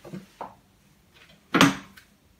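Two faint clicks, then one sharp knock about one and a half seconds in, as a microphone cable's connector is handled and fitted to a condenser microphone on a boom arm.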